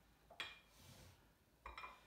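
Metal clinks from a plate-loaded dumbbell being gripped and shifted on the floor: one sharp ringing clink about half a second in, then a few lighter clinks near the end.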